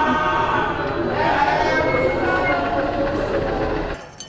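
A group of people singing together, many voices overlapping.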